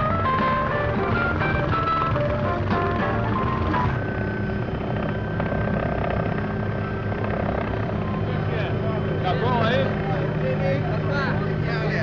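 Plucked-string music for the first few seconds gives way to the steady drone of a helicopter's engine and rotor. People's voices come in over the drone in the last few seconds.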